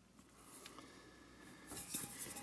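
Faint rubbing and handling of a stainless steel pot, with a light metal tap near the end.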